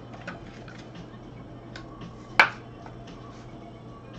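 Light clicks and taps of a hard plastic trading-card holder handled in gloved hands, with one sharp, loud click a little past halfway.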